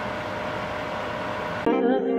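A steady hiss with a faint hum from a pot of sweet corn boiling on the stovetop. About one and a half seconds in it cuts off abruptly and background music with piano takes over.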